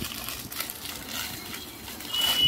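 Clear plastic saree packets crinkling and rustling as one packet is tugged out of a tightly stacked shelf.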